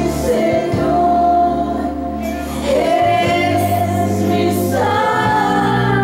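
Slow Christian worship song: a woman singing long held notes over a steady accompaniment, its low notes shifting about halfway through and again near the end.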